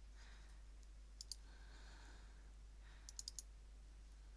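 Faint computer mouse clicks over a low steady hum: two quick clicks about a second in, then three or four quick clicks around three seconds in.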